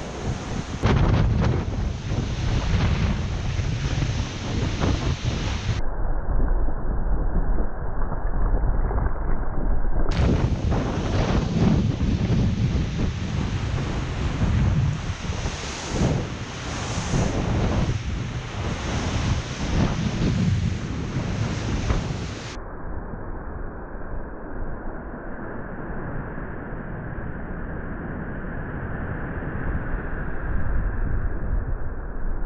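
Strong wind buffeting the microphone over the rush of water and spray along the hull of a Volvo Ocean 65 racing yacht sailing fast in about 44 knots of wind. The noise surges in gusts and sounds muffled for a few seconds midway and again near the end.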